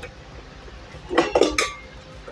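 Stainless steel bowl of a stand mixer clinking against the metal base as it is handled and lifted off: a short cluster of metallic clinks with a brief ring, a little past one second in.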